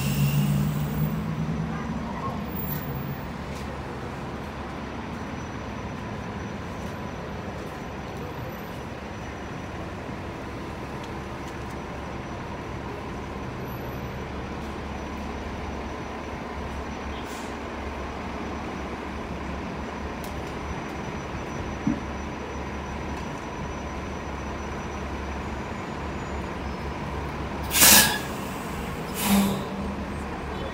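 2018/19 New Flyer Xcelsior XD40 diesel bus idling at a stop: a steady low engine drone, a little louder for the first couple of seconds. Near the end, two short blasts of compressed-air hiss come from its air system, about a second apart.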